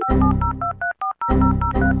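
Touch-tone telephone keypad beeps, a quick run of about a dozen short dual-tone presses, over a steady electronic music bed in a theme jingle. The beeps stop briefly twice near the middle.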